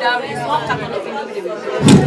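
Indistinct voices talking over one another in a large hall: party chatter with no clear words.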